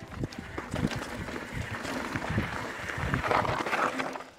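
Mountain bike rolling down a rock slab: tyres crunching over the rock, with irregular knocks and rattles from the bike, growing louder near the end as it draws close.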